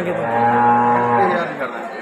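A cow mooing: one steady, drawn-out call lasting a little over a second.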